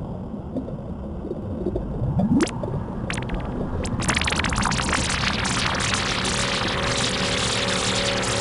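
Synthesized intro music and sound effects. A low rumble runs under a rising swoosh with a click about two seconds in. Halfway through it swells into a dense, shimmering hiss, and a held chord enters over it.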